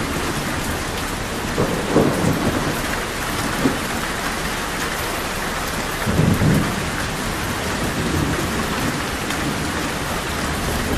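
Steady heavy rain pattering on surfaces, with low rumbles of thunder swelling briefly about two seconds in and again about six seconds in.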